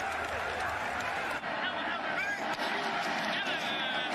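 Football game ambience from the field: a steady wash of background noise with faint, distant voices calling out.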